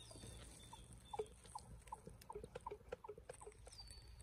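A faint run of short pitched animal calls, about three or four a second, with a thin falling whistle near the start and another near the end.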